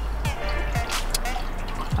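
Gasoline dripping and trickling off the lifted fuel pump basket back into the plastic fuel tank, with background music.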